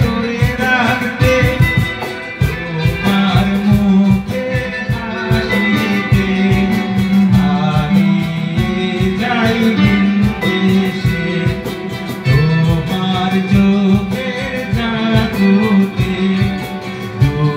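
A man singing a song live, accompanied by a steadily strummed acoustic guitar and an electric guitar.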